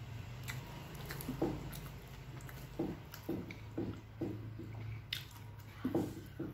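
A person chewing a mouthful of rice with sambal, the soft wet chews settling into a regular rhythm of about two a second from about three seconds in.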